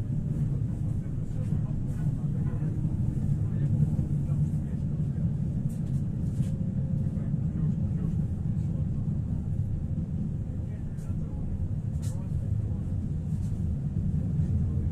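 Pesa Foxtrot tram running at speed, heard from inside the car: a steady low rumble of wheels on rail and running gear, with a few faint clicks from the track.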